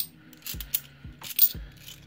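Twelve-sided cupronickel Australian 50-cent coins clinking against each other as a handful is shuffled through by hand: a handful of sharp metallic clinks, the loudest right at the start and about one and a half seconds in.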